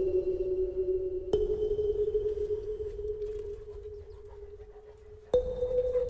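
Bells struck and ringing on, each tone dying away slowly: one strike about a second and a half in, and another of a higher pitch near the end.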